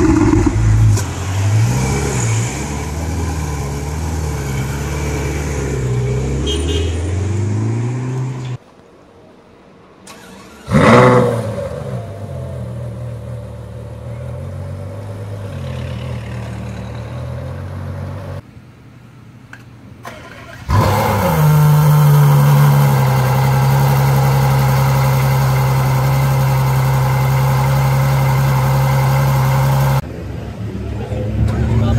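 A series of Ferrari engine clips cut together. First a 488 GTB's twin-turbo V8 idles with repeated throttle blips. After a short drop in level comes a start-up with a sharp rev flare that settles to idle, from an F12tdf V12. About twenty seconds in, another Ferrari catches and holds a loud, steady high idle.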